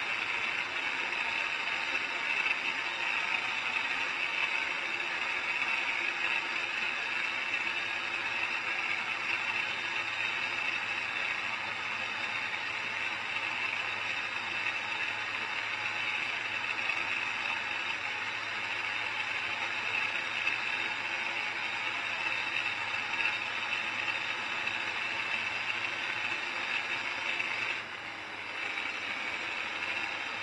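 Steady running noise inside the cab of a Holmer Terra Variant 600 self-propelled slurry applicator as it works slurry into stubble with a cultivator. The noise dips briefly about two seconds before the end.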